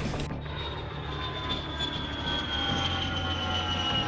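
Jet aircraft engines whining, several high tones gliding slowly down in pitch over a low rumble.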